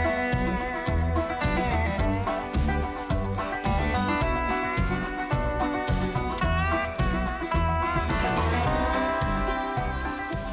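Background country-style music with plucked guitar over a steady beat.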